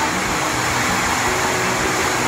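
Torrential rain pouring down in a steady, dense hiss.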